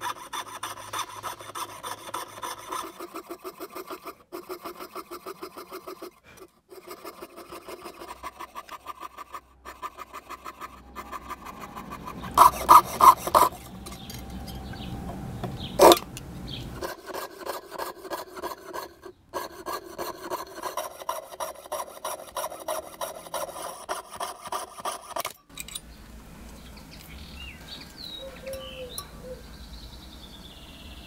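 A hand tool, a saw or file, worked back and forth on the scrap metal of an old locomotive bushing in quick, even strokes, several a second. There are a few louder strokes about halfway through and one sharp knock. Near the end the strokes stop and birds chirp faintly.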